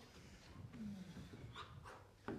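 Dancers breathing hard through a piece performed without music, with a short voiced exhale about a second in and faint scuffs and taps from their movement on the stage floor.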